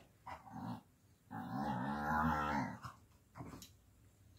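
A dog vocalizing: a couple of short sounds, then one long drawn-out pitched sound for about a second and a half in the middle, and a brief one near the end.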